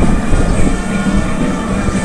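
Steady, loud crowd and ambient noise of a football stadium heard through a live match broadcast, with a low rumble and a steady hum underneath.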